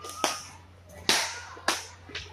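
Three loud, sharp cracks at uneven intervals, each fading quickly; the middle one has the longest tail.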